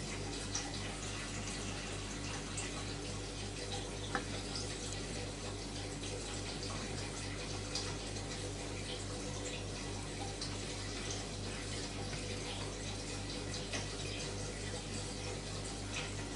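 Steady low hiss of room tone with a faint electrical hum underneath, and a few faint, isolated small clicks.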